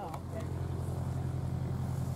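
An engine running steadily at idle, a low hum with a fast, even pulsing.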